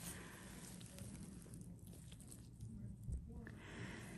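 Faint room tone with a low steady hum, and one brief soft knock a little after three seconds in.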